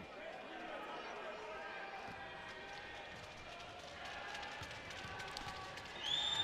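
Faint basketball-arena room sound: low crowd chatter in the gym during a stoppage in play, with a few faint knocks.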